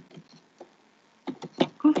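A few quick clicks of computer keyboard keys being typed, about a second and a half in.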